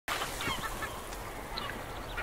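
Birds calling: many short, overlapping cries that glide in pitch, over a faint steady hiss.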